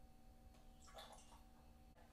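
Near silence: a faint steady electrical hum, with one brief faint sound about a second in.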